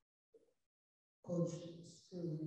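Near silence, then a person starts speaking a little over a second in.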